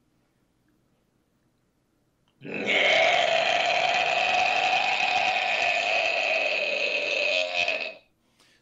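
A man's high extreme-metal scream shaped into a tunnel: one distorted held note that starts about two and a half seconds in and lasts about five seconds. Near the end the tongue taps the soft palate.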